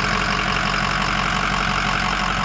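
Ford 6.0-litre Power Stroke V8 turbo diesel idling steadily, heard up close from over the open engine bay.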